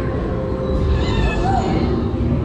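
A short, high-pitched animated-creature call from the dark ride's soundtrack, about a second in, over a steady low rumble from the ride.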